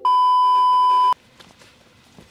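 A TV test-card tone, the single steady high beep played with colour bars, lasting about a second and cutting off abruptly, followed by low background noise.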